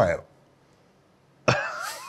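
After a short silence, a man bursts out laughing with a sudden explosive laugh about one and a half seconds in.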